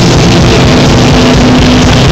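Live heavy rock band playing at full volume, so loud that the phone's microphone overloads and distorts; distorted guitars and bass hold a low, droning chord.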